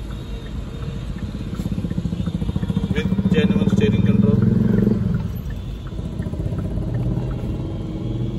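A motor vehicle engine running with a low, pulsing hum. It swells louder from about two seconds in and drops back abruptly about five seconds in.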